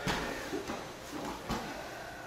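Two grapplers' bodies shifting and rolling on a vinyl-covered wrestling mat, with soft rustles and a low thump about one and a half seconds in.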